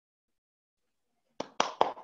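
Near silence, then three quick hand claps about a second and a half in, evenly spaced.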